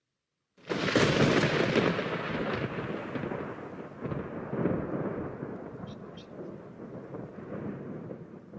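Thunder-like rumble sound effect over a production-company logo card: it starts abruptly about half a second in and slowly rolls away over several seconds.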